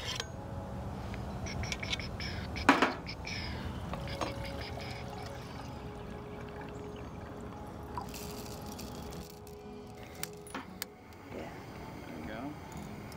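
Water pouring from a bottle into a Jetboil stove's cooking cup, with a single sharp knock near the start.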